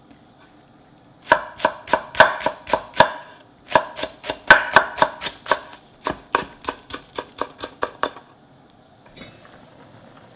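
Chef's knife slicing a large Korean green onion (daepa) on a wooden cutting board: quick, even strikes of about five a second in two runs, starting a little over a second in with a short break between them, stopping about two seconds before the end.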